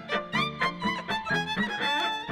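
Violin played live, a quick melody of short bowed notes, three or four to the second, with low notes sounding beneath it.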